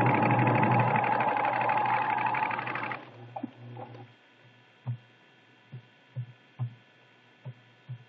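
Pfaff Creative 1473 CD computerized sewing machine running at a steady speed as it stitches, then stopping about three seconds in. After that come a few soft, irregularly spaced thumps over a faint low hum.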